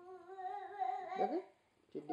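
A young child's voice humming one held note for about a second, then sliding down in pitch into a short spoken "okay".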